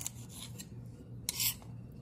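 Knife cutting the ends off a bunch of green beans on a marble cutting board: faint, with one short scraping cut a little past halfway.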